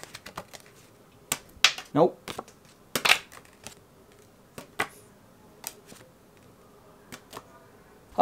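Playing cards being flipped up off the edge of a desk and slapping or dropping onto the tabletop: a scattered series of sharp clicks and snaps, the loudest about three seconds in.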